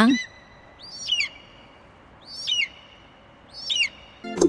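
An eagle crying three times, about 1.3 s apart; each cry is short and high-pitched and falls in pitch.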